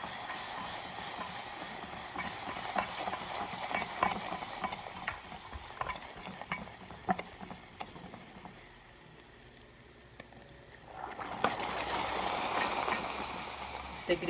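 Caramelized sugar syrup sizzling in a saucepan as water is stirred in, with a silicone spatula scraping and knocking against the pan in many sharp clicks. The sizzle dies down about two-thirds of the way through, then rises again near the end as more water goes in.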